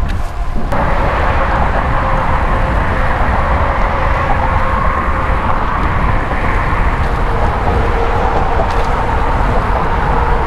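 Wind rushing over a helmet-mounted action camera's microphone while riding a road bike, with steady road and traffic noise beneath. The sound changes abruptly under a second in to a denser, steadier hiss.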